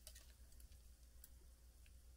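Near silence: a steady low hum with three faint, light clicks, one right at the start, one about a second and a quarter in and one near the end.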